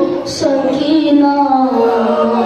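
A boy chanting a paish-khwani, a melodic elegiac recitation, solo into a microphone, his voice holding long notes that slide up and down in pitch.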